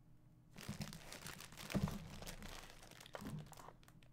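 Clear plastic bag around a hockey jersey crinkling as the jersey is handled and turned over, starting about half a second in, loudest a little before the middle, and dying away just before the end.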